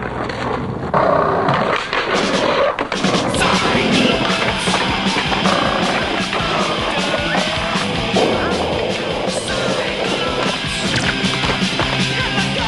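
Skateboard rolling on pavement, its wheels running with repeated clacks and knocks of the board, over music.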